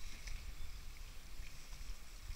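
Kayak paddling on calm sea: light water splashing and dripping from the paddle blade against the hull, over a low wind rumble on the microphone.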